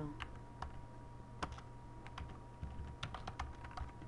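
Typing on a computer keyboard: scattered key clicks at an irregular, unhurried pace.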